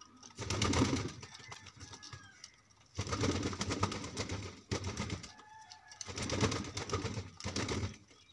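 Domestic pigeons cooing: three long coos, about a second and a half each, at the start, middle and end, with light ticking of beaks pecking grain between them.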